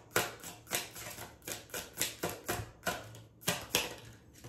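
A deck of After Tarot cards being shuffled by hand, the cards clicking against each other in quick, uneven strokes, about four a second.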